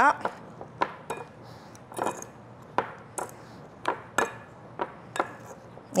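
A muddler crushing and twisting lime pieces, mint leaves and sugar in a glass tumbler for a mojito, giving irregular knocks against the glass, roughly one or two a second.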